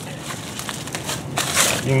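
Dry fallen leaves rustling and crackling as a hand crumbles and scatters them, loudest about one and a half seconds in.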